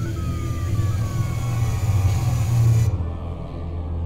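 Dark ambient soundtrack: a loud, steady low rumbling drone with thin tones gliding slowly downward above it. The upper layer cuts off abruptly about three seconds in, leaving the drone.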